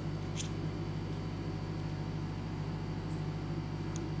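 Steady low electrical hum with a faint hiss, broken by one brief faint scratch about half a second in.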